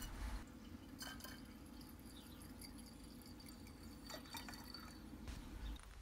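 Faint trickle of liquid bromobenzene running into a glass addition funnel over molecular sieve beads, with a few light glass clicks over a low steady hum.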